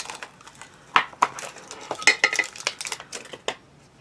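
Plastic packaging of a small MP3 player being opened by hand: a run of sharp clicks, taps and plastic rattles, with a brief squeak about two seconds in.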